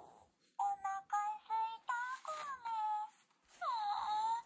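Talking Kome-Kome plush doll playing high-pitched character voice phrases through its built-in speaker, with a short pause about three seconds in.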